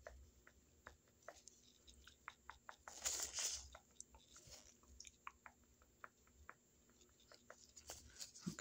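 Faint, irregular clicking and scratching of a mock plaque scraping close to the microphone, as on the upper teeth, with a brief louder hiss about three seconds in.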